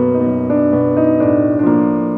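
Slow, calm piano music, with single notes and chords struck every fraction of a second and left to ring.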